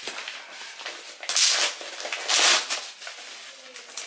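Paper packaging rustling as a padded mailer envelope is handled and opened, with two loud rustles about a second apart in the middle.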